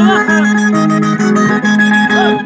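Andean pumpin music played on acoustic guitars amplified through a portable speaker, with a steady strummed rhythm under held melody notes.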